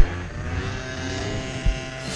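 Small motorbike and scooter engines idling steadily, with a sharp knock at the start and another short knock near the end.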